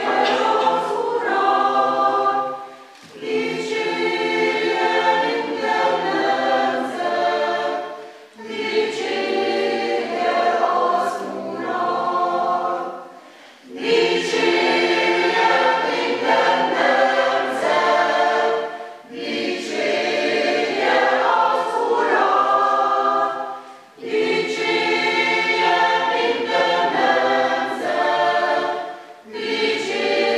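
Mixed church choir singing a sacred song in parts, unaccompanied, in phrases of about five seconds with short breaks for breath between them.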